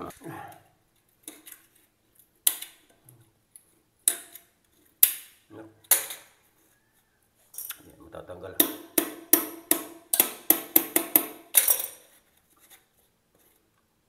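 Sharp clicks and taps of metal hand tools against the porcelain toilet base and its floor-bolt cap as the bolt is being freed: a few separate clicks, then a quick run of about a dozen over roughly four seconds past the middle.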